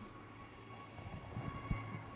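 Quiet pause: room tone with a steady low electrical hum and a few faint low thumps about a second in.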